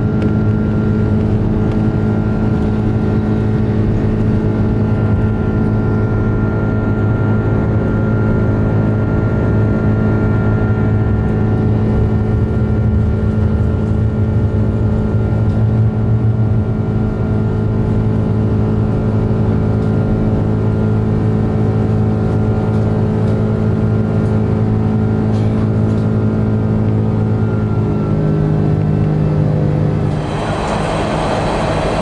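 Cabin noise of an Airbus A330-300's Rolls-Royce Trent 700 engines at takeoff power as the airliner leaves the runway and climbs. It is a loud, steady drone with several held tones, and the tones shift slightly near the end.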